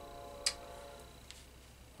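Two light clicks under a second apart, the first the louder, from a glass beer bottle being handled and turned in the hand. A faint steady hum fades out in the first second.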